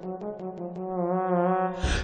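A trombone holds one long note with a slight waver in a song's instrumental backing, with a few light ticks early in the first second.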